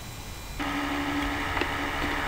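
A steady low hum with one clear low tone, starting abruptly about half a second in and holding level.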